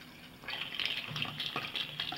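Water running and bubbling through the straws of a Fountain Connection, draining from the inverted upper soda bottle into the lower one as air bubbles up into the upper bottle. It starts about half a second in and carries on steadily.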